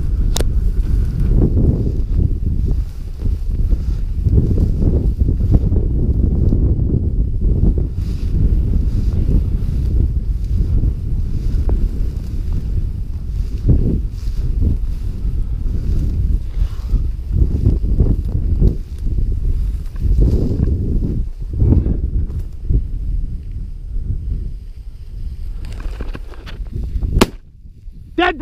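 Wind buffeting the microphone and dry grass brushing past while walking through a field, a dense rumble that swells and eases. Near the end comes a single sharp crack from a shotgun.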